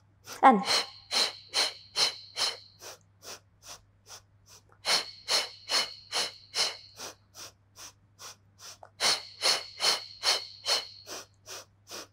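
A woman's short, sharp rhythmic breaths for the Pilates 'hundred', about two to three a second in counted sets of five, louder sets alternating with softer ones.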